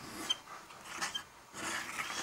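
Broad nib of a Montblanc Meisterstück 144 fountain pen scratching across paper in a few short strokes, written under heavy pressure.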